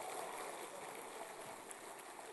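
Faint audience applause, heard as an even, hiss-like patter that slowly dies away.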